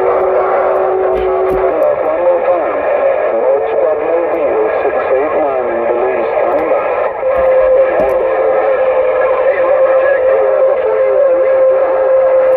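Uniden Grant XL CB radio's speaker receiving a busy AM channel: several garbled voices talk over one another, with a steady whistle tone that shifts pitch twice.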